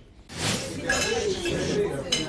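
Restaurant clatter: dishes and cutlery clinking over indistinct chatter, starting a moment after a brief hush.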